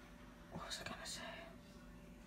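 A person's faint whispered speech, a brief hissy murmur about half a second to a second in, over low room hiss.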